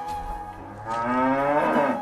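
A cow mooing once, a single call about a second long in the second half, over background flute music.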